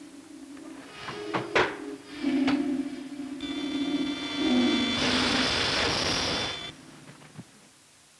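Sci-fi rocket-ship sound effects: a few clicks, then a steady low electronic hum joined by a high steady whine, and a loud hiss of rocket exhaust for under two seconds that cuts off suddenly.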